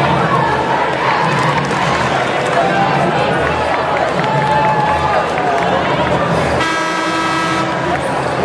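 Gym crowd chatter, then about six and a half seconds in the arena horn sounds one steady tone for about a second and cuts off, the signal that the timeout is over.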